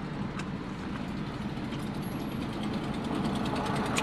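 Steady low rumble of a car engine idling, heard from inside the cabin, with a few faint clicks.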